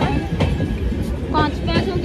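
Low, steady rumble of a train at the platform, with people's voices around it and a couple of sharp knocks.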